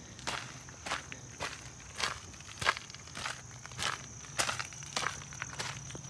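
Footsteps on a gravel dirt road, about two steps a second, as someone walks along beside a parked car.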